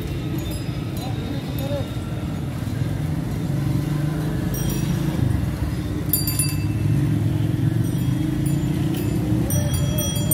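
Outdoor crowd and street ambience: indistinct voices over a steady low rumble. A few brief high tones come about five seconds in and again near the end.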